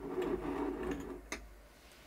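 Rummaging among paintbrushes and painting supplies while searching for a small brush: a rattling clatter for about a second, then a single sharp click.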